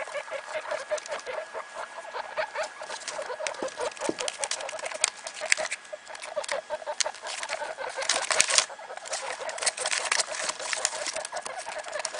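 Guinea pigs making short, repeated clucking calls, several a second, with scratchy rustling from the newspaper bedding; a louder rustle comes about eight seconds in.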